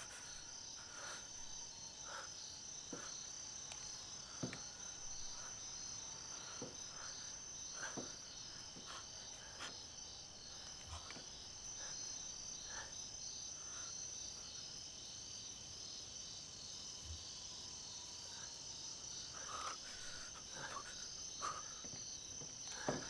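Steady high chirring of crickets, with a few faint short taps and creaks scattered through it.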